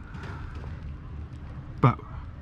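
Quiet, steady outdoor background noise with a low rumble in a pause between a man's words, broken by one short spoken word near the end.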